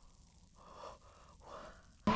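Two faint, heavy breaths from a man, panting as if overheated.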